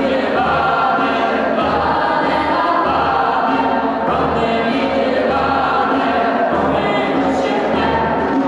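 A small group of mixed male and female voices singing a song together, steadily and without a break, in a large stone church.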